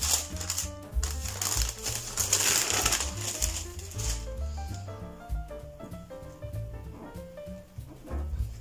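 A sheet of baking paper crinkling as it is peeled off rolled-out pastry dough, for the first four seconds or so, over background music of short melodic notes; after that the music goes on alone with a few light handling sounds.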